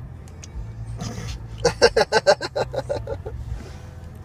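Low steady car engine hum inside the cabin, with a breath about a second in, then a quick run of giggling pulses that fades out over about a second and a half.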